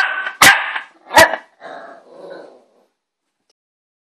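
Small white terrier puppy barking sharply at a knocked-over remote control: three loud barks in the first second and a half, then a couple of fainter, rougher sounds.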